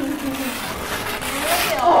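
Masking tape being peeled off a freshly painted wall in one long strip: a continuous ripping crackle that grows louder near the end.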